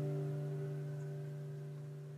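The song's final guitar chord ringing out and slowly fading away.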